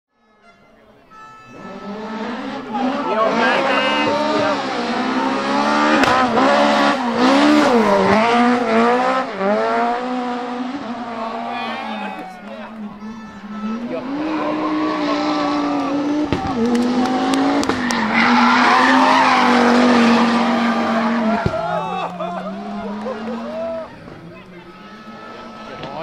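Rally cars driven hard through a tarmac hairpin one after another, fading in at the start: engines revving up and down through gear changes, with a string of sharp exhaust pops and bangs in the first pass and tyres squealing. The second loud pass, in the middle, is an Audi quattro rally car.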